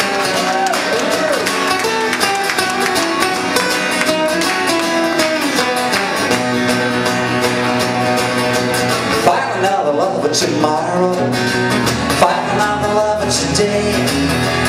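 Two steel-string acoustic guitars playing an up-tempo rock and roll instrumental passage live, one strummed for rhythm while the other plays flatpicked lead lines.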